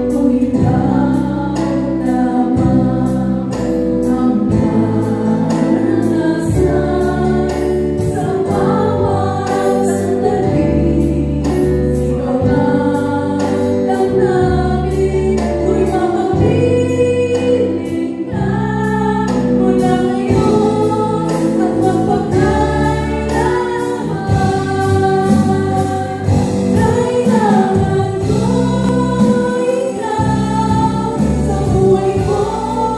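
Live band playing a song: voices singing over acoustic guitar, electric bass, keyboard and electronic drums keeping a steady beat.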